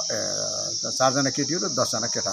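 A steady, high-pitched chorus of insects runs without a break, with men's voices talking over it.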